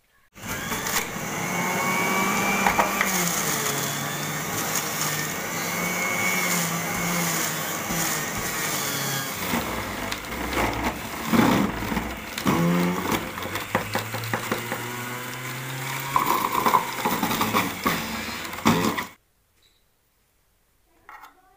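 Electric juice extractor running as carrots and peeled kinnow oranges are pushed down its feed chute and ground, its motor note wavering as the produce loads it. It cuts off suddenly about a second before the end.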